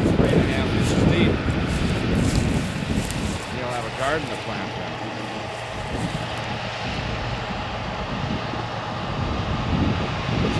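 Large four-wheel-drive tractor's diesel engine running steadily as it pulls a planter bar with tillage units through the field, not lugging. It is loudest in the first second or so and eases a little after about three seconds.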